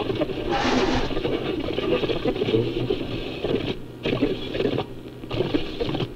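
A dense, rattling noise texture from an experimental home music recording, with two brief drop-outs about four and five seconds in.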